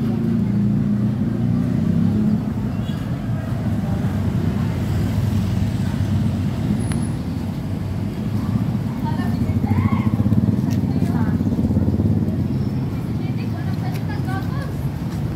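A motor vehicle engine running nearby on a street: a steady low rumble.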